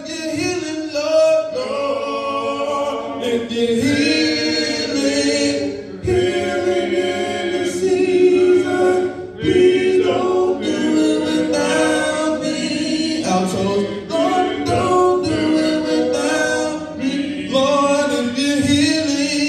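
A group of voices singing a hymn a cappella, with no instruments, in long held notes.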